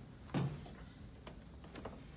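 A single short knock about a third of a second in, then a few faint light ticks, over low room tone.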